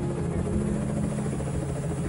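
Bell UH-1 "Huey" helicopters flying low, their two-bladed main rotors making a fast, steady chop over a low turbine hum.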